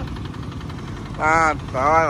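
Kubota ZT140 walking tractor's single-cylinder diesel engine running steadily as it pulls a loaded trailer. A voice calls out loudly twice in the second half.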